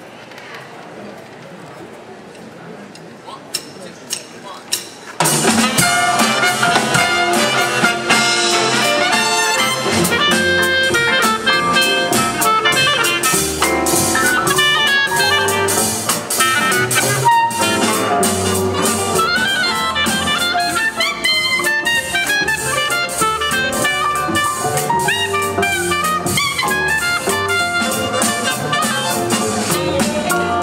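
A few sharp clicks over a low murmur, then about five seconds in a jazz big band comes in loud all at once: trumpets, trombones and saxophones over drum kit, with piano and upright bass.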